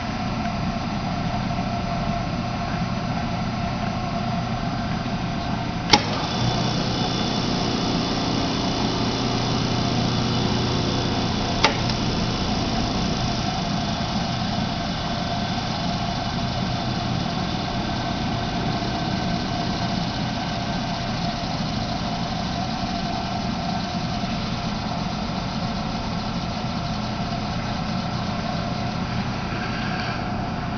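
Homemade 10 hp rotary phase converter running with a steady hum. A click about six seconds in is followed by a three-quarter horsepower three-phase Baldor bench grinder running on the converter's power, adding to the hum until a second click some six seconds later, after which the hum settles back.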